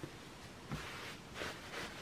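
Faint, soft rustling of a cotton terry hand towel being folded and smoothed by hand on a cutting mat, a few brief brushes over quiet room tone.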